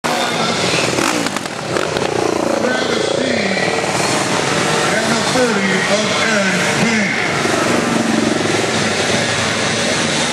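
Small single-cylinder engine of a mini quad (youth ATV) running as it rides around an indoor dirt flat track. Indistinct voices are heard over it.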